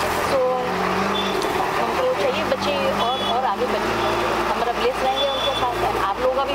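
A woman speaking, with a steady low mechanical hum running underneath.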